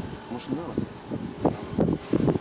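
Quiet, indistinct talk in short fragments, with a faint outdoor background behind it.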